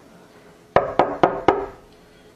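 Four quick knocks of a hand on a wooden panelled door, about four a second, starting just under a second in.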